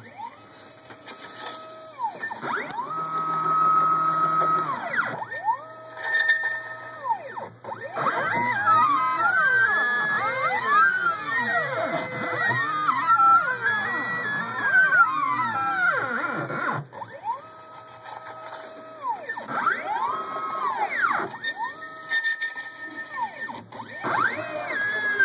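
NEMA23 stepper motors of a home-built CNC plotter whining as the axes move. Each tone rises in pitch, holds steady and then falls as a move speeds up, runs and slows down. In the middle stretch several tones overlap and sweep up and down together.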